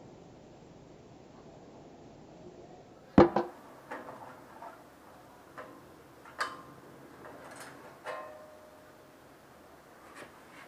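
Hands working on the metal frame and parts of an old bandsaw: a sharp knock about three seconds in, a second just after it, then scattered lighter clicks and taps.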